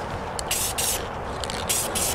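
Aerosol spray-paint can giving a quick series of short hissing bursts, about five in two seconds, as brown camouflage paint is dusted onto an air rifle's barrel.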